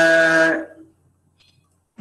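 A man's voice holding one long drawn-out vowel, the end of an 'okay', which stops a little under a second in and is followed by near silence.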